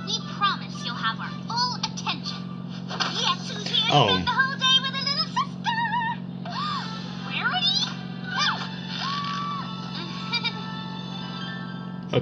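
Cartoon episode soundtrack: high-pitched character voices, including a long wavering exclamation around four seconds in, over background music, with a steady low hum underneath.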